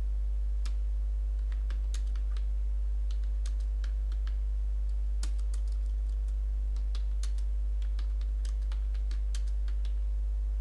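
Computer keyboard being typed on in short, irregular runs of keystrokes, over a steady low hum.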